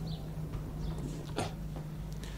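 A gap in the talk on an old field recording: steady tape hiss and a low hum, broken by one brief sharp sound about one and a half seconds in.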